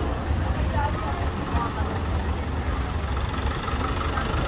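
Street ambience in slow traffic: a steady low rumble of vehicle engines idling, including a passenger jeepney alongside, under the chatter of a crowd of shoppers.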